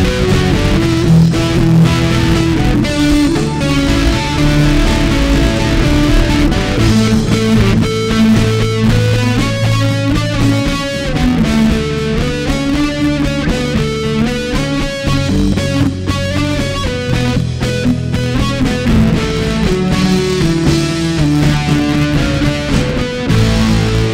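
Live band playing a song: acoustic and electric guitars, bass and drums, at a steady, full level.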